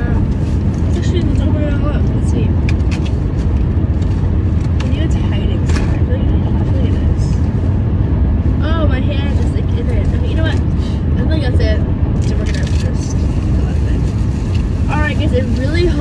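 Steady low road and engine rumble inside a moving car's cabin, with scattered short clicks and rustles over it.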